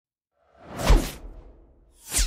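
A whoosh sound effect for an animated logo intro. It swells in about half a second in, peaks with a falling sweep in pitch just before the one-second mark, and fades away.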